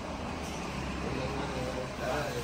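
Steady low background rumble with faint, indistinct men's voices in the middle; no ball strikes.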